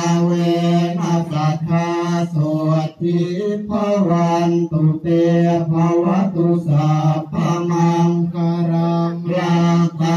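Buddhist chanting in Pali, Thai style: voices reciting on one or two steady pitches, in phrases broken by short pauses.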